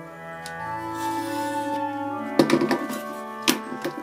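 Soft background music with long held notes. About two and a half seconds in there is a sharp knock as a craft knife is set down on a cutting mat, then another knock a second later as tools are handled.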